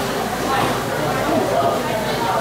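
Indistinct chatter of other diners in a busy restaurant, steady and at a moderate level.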